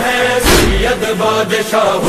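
A noha, a Shia lament, recited in a chanting voice with long held notes over a heavy beat about once a second.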